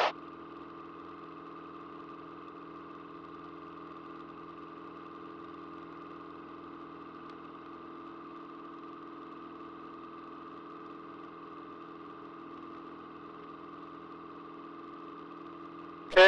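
Single-engine light aircraft's piston engine and propeller droning steadily at climb power just after takeoff, an even hum with no change in pitch or level.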